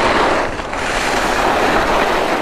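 Head race skis carving and scraping across firm groomed snow: a loud, steady hiss of edges on snow that dips briefly about half a second in as one turn ends and the next begins.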